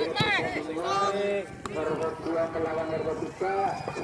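A voice calling out in long, drawn-out shouts, the excited commentary of a village football match as an attack closes in on goal.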